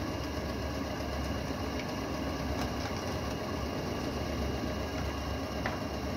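Steady mechanical hum of workshop machinery, most likely the plate-moulding press's motor and pump running, with a few faint clicks of a tool against the metal mould.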